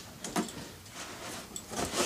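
Rummaging in a cardboard box: soft scraping and rustling of the box and the packed parts being moved, with one short knock about half a second in.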